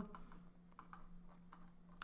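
Near silence: a low steady hum with a few faint, scattered clicks from working the computer's keys or mouse.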